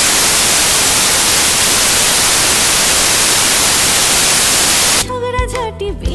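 Loud, steady hiss of static white noise that cuts off suddenly about five seconds in, where a song with singing comes back in.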